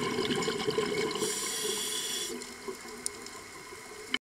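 Scuba diver's breathing through a regulator, recorded underwater: a gurgling burst of exhaled bubbles, then a hissing inhalation from about a second in that stops a second later, leaving quieter water noise.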